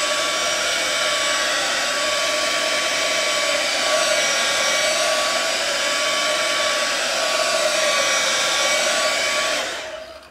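Hair dryer running steadily, blowing over freshly sprayed paint to tack it off, with a few faint steady tones over its airflow. It switches off near the end.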